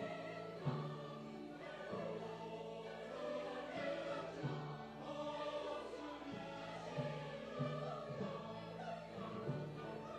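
Large church choir of men's and women's voices singing an anthem together, with instrumental accompaniment playing short low notes underneath.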